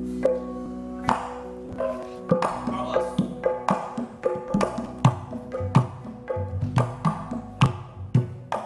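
Music accompanying a pencak silat display: kendang drum strokes and sharp wooden knocks over ringing tuned percussion. It opens with a sustained chord, then goes on as a quick, uneven run of strikes.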